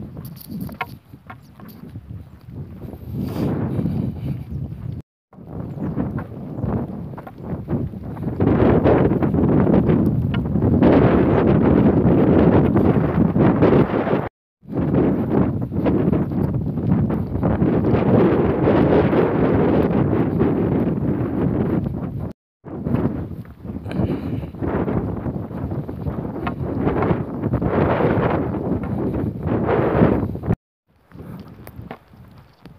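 Wind buffeting a handheld phone's microphone during a walk outdoors, a loud, uneven rushing that cuts out abruptly three times for a moment.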